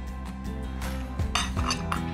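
Light clinks of a small glass bowl being handled as prunes are tipped into a braising pan, a little under a second in and again around a second and a half, over soft background music with steady held notes.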